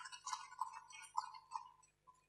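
Faint, scattered applause from an audience, dying away near the end.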